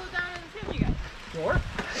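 Crunching and rustling of loose dirt and forest litter under a mountain bike's tyres and feet moving down a steep trail, with a few low thuds.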